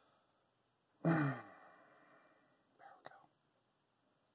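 A man clears his throat about a second in: a voiced grunt that falls in pitch and trails off in a breathy exhale. A shorter, weaker throat sound and a light click follow near the three-second mark.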